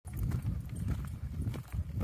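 Footsteps walking on the planks of a wooden boardwalk: a run of hollow knocks with a few sharper clicks.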